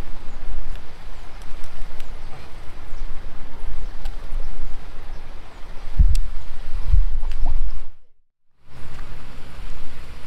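Wind buffeting the microphone: a steady low rumble with stronger gusts about six and seven seconds in. The sound cuts out for about half a second near eight seconds.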